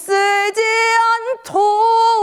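A woman singing a Korean popular song unaccompanied, in a pansori-trained voice: long held notes with vibrato, broken by short breaths about half a second and a second and a half in.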